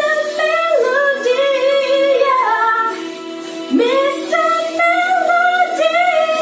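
A woman singing long held notes with vibrato, in two phrases that each open with a swoop up in pitch, the second a little past halfway, over a steady backing.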